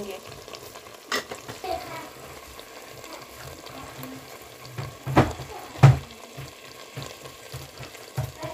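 Potato and eggplant pieces sizzling in oil in a pot as they are sautéed with ground spices and stirred with a spoon. The spoon clicks against the pot a few times, knocking loudest twice about five and six seconds in.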